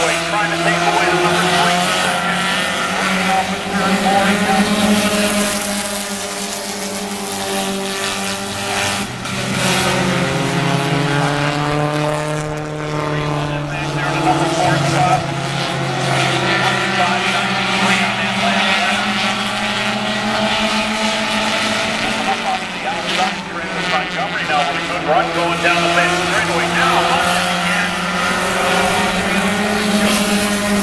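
A pack of four-cylinder stock cars racing on a short oval, several engines running hard at high revs together. Around the middle the engine pitches slide down and back up as cars go past.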